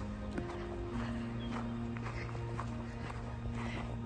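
Footsteps crunching and creaking on fresh snow, about two steps a second, under background music with long held notes.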